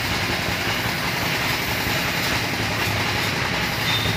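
Steady mechanical running noise, a rumble with an air hiss over it, from the compressed-air spray-painting rig: the air compressor feeding the HVLP spray gun.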